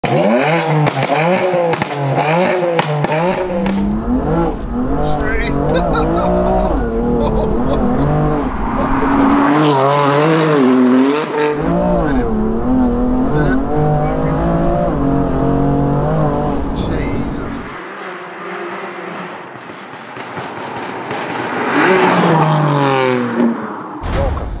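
A stage 3 tuned BMW M2 Competition's twin-turbo straight-six revving hard under acceleration, its pitch climbing and dropping back again and again as it pulls through the gears, heard from inside the cabin.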